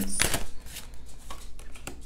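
Tarot cards being handled: a burst of card noise as a card is pulled from the deck just after the start, then a few light taps and slides as it is laid on the table.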